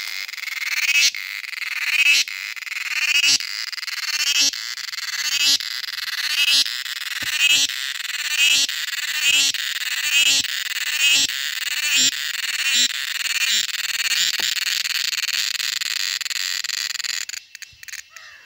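A cicada singing close by: a loud, high-pitched buzzing call in repeated phrases about one a second, each swelling and then cutting off sharply. Near the end the phrases quicken and run together into a steady buzz, which stops abruptly.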